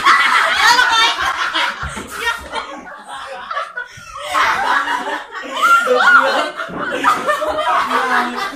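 People laughing hard, a woman's open-mouthed laughter among them, in repeated bursts mixed with a few exclamations.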